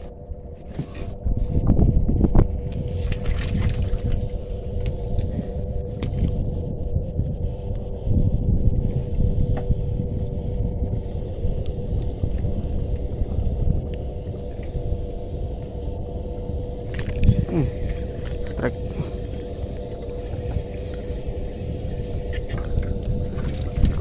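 A boat engine running steadily, heard as a constant hum over a low, wavering rumble.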